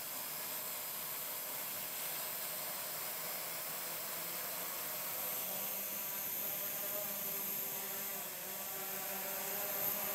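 Walkera QR Y100 mini hexacopter's six motors and propellers spinning up for an automatic one-key takeoff, a steady whir with faint tones that shift as it lifts off.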